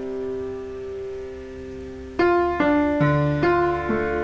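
Background piano music: a held chord, then from about two seconds in a run of single notes struck about every half second, each fading as it rings.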